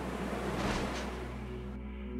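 Orchestral film score with held notes, and a rushing whoosh that swells up about half a second in and dies away by about a second.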